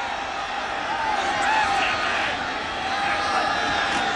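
Stadium crowd noise from a college football crowd: a steady din of many voices, with scattered distant shouts a little past a second in and again past three seconds.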